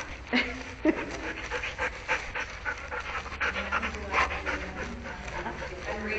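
A dog panting quickly and steadily, about three breaths a second, with a couple of knocks in the first second.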